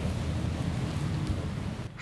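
Steady rushing rumble of wind on the microphone, with no clear tone in it, cutting off suddenly near the end.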